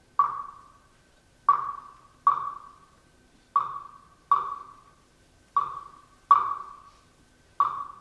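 A single pitched percussion instrument in a concert band struck eight times alone, one note on the same pitch each time, in a slow long-short rhythm, each stroke ringing briefly and dying away.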